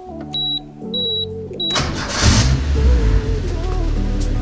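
Toyota AE86 Levin's 4A-G four-cylinder being started: three short high beeps, then about two seconds in the engine cranks briefly, fires and settles into a steady idle.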